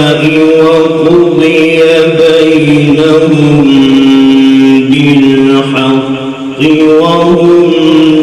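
A man reciting the Quran in a slow, melodic chanted style, holding long notes with ornamented turns of pitch. A brief break for breath comes about six seconds in.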